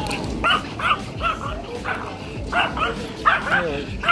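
Yorkshire terrier yapping at another dog: about ten short, high-pitched yaps, mostly in quick pairs. It is the warning-off bark of a small dog guarding its owner.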